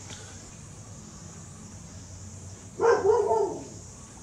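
Quiet room tone, then one short, high-pitched animal call lasting under a second, about three seconds in.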